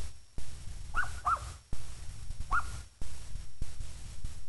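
Three short high animal calls: two close together about a second in, and a third a little over a second later, over a gusty low rumble on the microphone.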